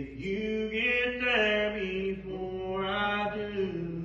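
A slow song: a voice singing long held notes that slide from one pitch to the next.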